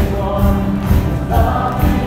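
A church congregation singing a hymn together, many voices with instrumental accompaniment and a steady beat of about two to three pulses a second.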